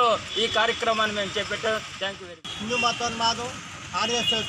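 A man speaking over steady road-traffic noise. The sound drops out abruptly for an instant about two and a half seconds in.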